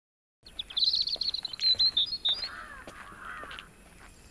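Birds calling: a high, rapid chirping call for the first couple of seconds, then a series of lower calls. The sound starts suddenly about half a second in, out of silence.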